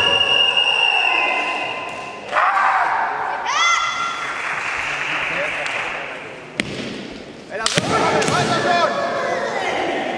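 Kendo kiai: long, drawn-out shouts from the fighters, one after another, one rising in pitch, with sharp strike sounds a little after six seconds in and twice near eight seconds, shinai hitting or feet stamping on the wooden floor.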